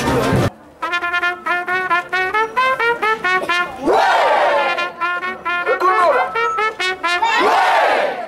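Street brass band playing a quick tune in short notes on trumpets, trombone, saxophones and sousaphone, with two rising-and-falling swoops about four and seven and a half seconds in. A brief burst of crowd noise comes before an abrupt cut about half a second in.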